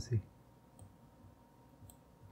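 Faint computer mouse clicks, two of them about a second apart, as on-screen sliders are dragged.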